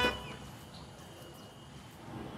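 Faint, steady background noise in a lull, after speech and music fade out in the first moment.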